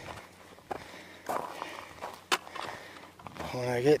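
Footsteps on a steep gravelly dirt trail as a hiker climbs uphill: a few uneven steps, with one sharp click a little over two seconds in.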